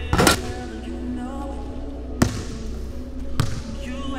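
A basketball dropping through the hoop's net with a short swish, then two sharp thuds of the ball on a hardwood gym floor, more than a second apart.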